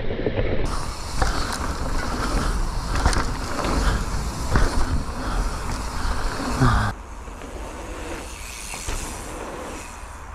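Mountain bike riding fast on a dry dirt trail, recorded on an action camera: rushing wind on the microphone and tyres on dirt, with frequent sharp knocks and rattles from the bike over jumps. About seven seconds in, it cuts abruptly to a quieter, steadier rush.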